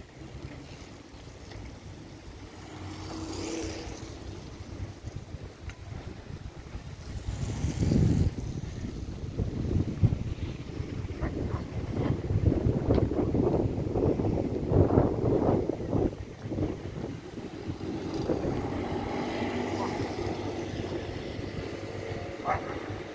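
Wind buffeting the phone's microphone, a low rumble that swells in gusts and is busiest in the middle stretch.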